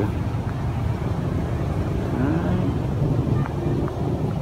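A steady low rumble of background noise, with a faint voice briefly heard a couple of times.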